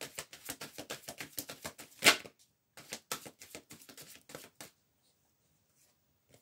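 A deck of tarot cards being shuffled by hand: a rapid run of crisp card clicks with one louder snap about two seconds in, a short break, then softer clicks that stop after about four and a half seconds.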